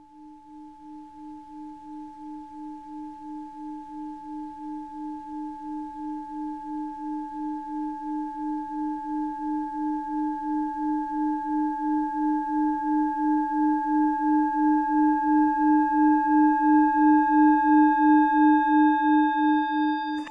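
Singing bowl ringing in one long sustained tone that wavers in a steady pulse, about two or three times a second, and swells gradually louder.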